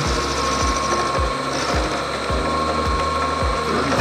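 Vertical milling machine spindle running at about 500 RPM with a 3/8-inch end mill cutting a 1911 pistol frame's tang in a beavertail fixture: a steady whine with a low knock repeating about twice a second.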